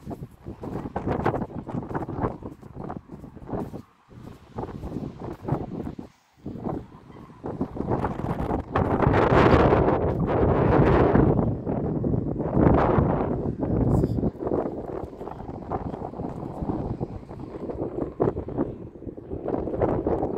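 Wind buffeting the phone's microphone in uneven gusts, loudest from about eight to twelve seconds in, with two brief drop-outs in the first seven seconds.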